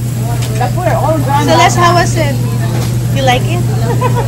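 Restaurant din: people talking over one another at the tables, with a loud steady low hum underneath.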